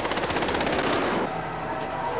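Rapid automatic gunfire from a film soundtrack, a fast string of shots that stops about a second in, leaving a steady drone.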